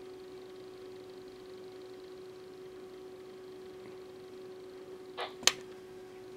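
A faint steady hum at one pitch in a quiet room, with two short clicks about five seconds in, the second one sharp.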